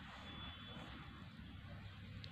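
Faint steady background noise with a low hum, close to room tone.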